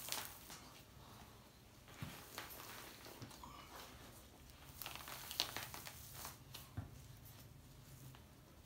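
Faint crackling and tearing of a red fox pelt being pulled down off the carcass by hand as the skin peels away from the flesh, with a few light sharp clicks.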